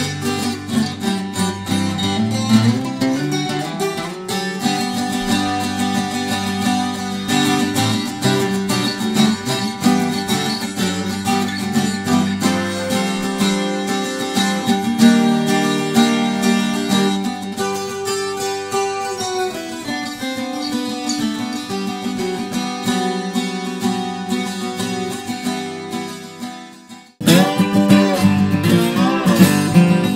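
A 12-string acoustic guitar in an alternate tuning, playing slow ringing chords and arpeggios with sustained notes. About 27 s in it fades away and then cuts abruptly to another 12-string acoustic, strummed louder.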